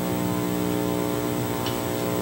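A steady electrical hum: a low buzz with several steady overtones, unchanging throughout.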